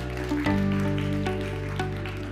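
Intro music: a sustained low chord with light plucked notes over it, the chord changing about half a second in.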